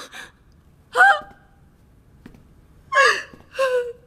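A frightened woman's short, high-pitched gasps and whimpers: one brief cry about a second in, then two more near the end.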